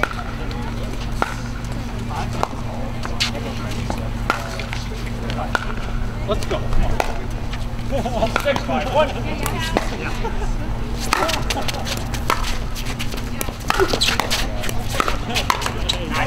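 Scattered sharp pops of pickleball paddles striking the plastic ball on neighbouring courts, coming irregularly and thicker near the end, with faint voices and a steady low hum underneath.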